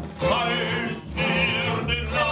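Live music: a male voice singing with vibrato over a small instrumental ensemble.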